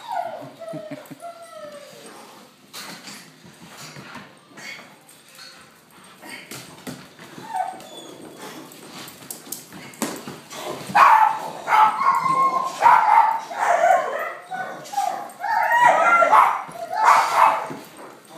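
German shepherd puppies barking and yipping in play-guarding, with whines and scuffling. It starts with a falling whine and quieter scuffling, then turns into a run of loud, rapid barks in the second half.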